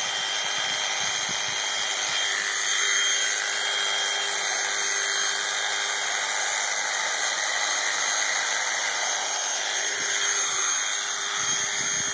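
Electric sheep-shearing handpiece running steadily with a high motor whine as it cuts through the fleece.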